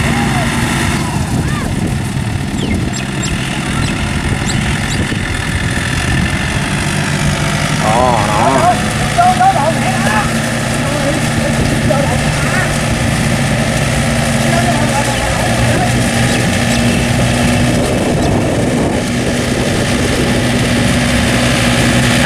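Yanmar tractor's diesel engine running steadily under load as the tractor churns on steel cage wheels through thick paddy mud, puddling the field. Voices talk briefly in the background about a third of the way in.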